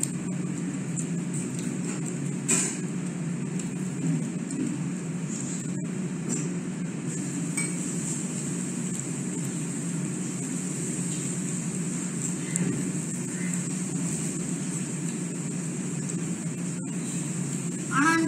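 Steady low background hum with a high hiss, one sharp click about two and a half seconds in, and faint voices now and then.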